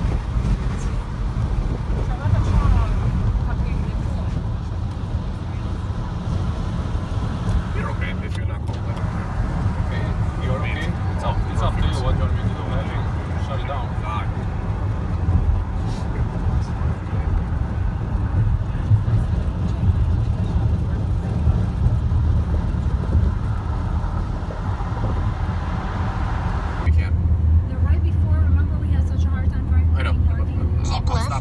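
Road noise inside a moving car's cabin: a steady low rumble of tyres and engine at highway speed. About three seconds before the end, the hiss fades and the low rumble grows heavier.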